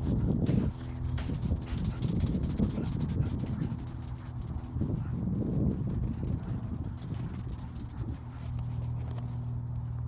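Footsteps crunching through snow, uneven and close, over a steady low hum that grows clearer near the end.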